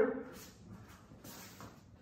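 Faint shuffling and a few light knocks of people moving about on their feet, after the tail of a spoken word at the very start.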